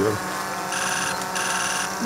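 An electronic ringtone trilling twice, two short high rings about half a second each with a brief gap between them, over a steady low background hum.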